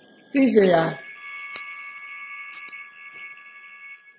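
A loud, high-pitched steady ringing tone made of several fixed pitches. It swells over the first second or so, holds, then fades toward the end, with a brief spoken syllable near the start.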